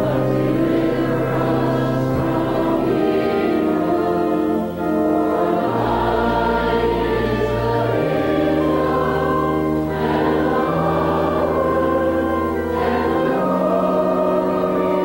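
A hymn sung by many voices with organ accompaniment, the organ holding long chords whose bass steps to a new note every two or three seconds.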